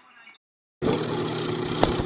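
Peaches and almond-milk creamer sizzling and bubbling in a hot nonstick frying pan, starting about a second in, over a steady low hum. A wooden spatula clicks against the pan a couple of times near the end.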